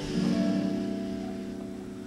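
Guitar in an open tuning, one chord strummed once just after the start and left to ring, fading slowly as a sustained drone.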